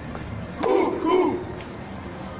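A group of voices shouting two syllables in unison, about half a second apart, part of a rhythmic chant that repeats every couple of seconds.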